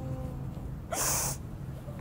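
A person sniffling once about a second in: a short, sharp breath in through the nose while tearful from crying.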